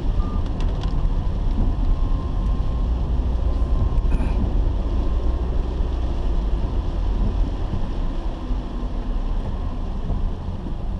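Steady low rumble of a car driving on a wet road, heard from inside the cabin: engine and tyre noise, with a faint thin steady whine in the first half.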